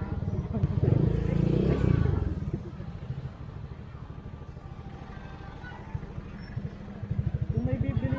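A motorcycle engine running at low speed, a steady low pulsing throb that gets louder and quicker near the end.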